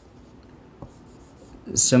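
Marker pen writing on a whiteboard: faint scratchy strokes with a small tap about halfway through, then a man's voice comes in near the end.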